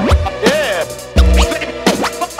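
Hip-hop beat with turntable scratching: quick record scratches sweeping up and down in pitch over bass and kick drum hits, with no rapping.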